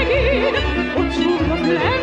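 A soprano singing an operetta melody with a wide vibrato, over instrumental accompaniment with a pulsing bass.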